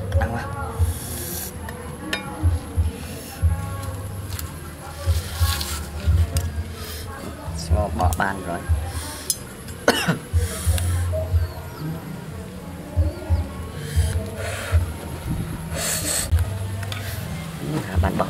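Kitchen knife and spoon clinking and scraping against a metal mess tin as cooked snake is sliced and handled, with a few sharp clicks.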